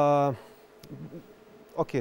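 A man's drawn-out hesitation sound, a steady held "eeh" lasting about half a second at the start. A pause follows, then a short spoken "okay" near the end.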